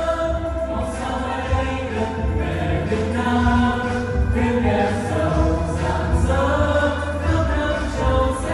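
A Vietnamese youth song sung by a group of voices in unison over a backing track with a steady pulsing bass beat.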